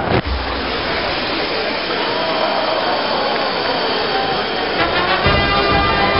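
A steady rushing, hissing noise starts suddenly just after the beginning and runs for about five seconds, with music under it.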